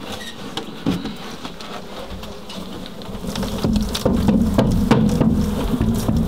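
Honey bees buzzing close by, a steady hum that grows louder in the second half, with scattered clicks and knocks from the hive box and comb being handled.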